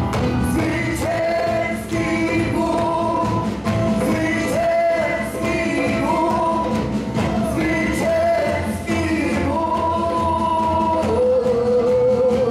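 Live worship band playing a song: sung vocals holding long notes over keyboard, drum kit and hand drums, with a steady beat.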